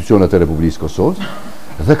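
A man speaking on a talk show, with a short pause about a second in before he goes on.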